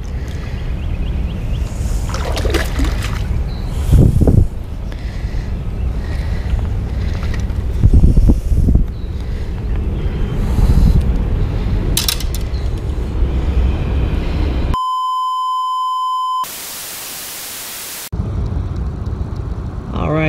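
Steady rumbling wind and river noise on the camera microphone while a big fish is handled, with loud knocks about 4 and 8 seconds in. About three-quarters of the way through, the noise cuts to a steady high beep tone for under two seconds, then a short stretch of flat hiss like static, before the outdoor noise returns.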